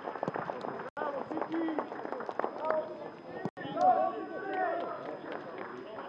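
Several men's voices shouting and calling over one another at once, with scattered small knocks. The sound breaks off briefly twice, about a second in and again past the middle.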